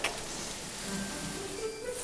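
Soft background music over a steady faint crackling hiss: the sound of a fireplace video playing on a flat-screen TV.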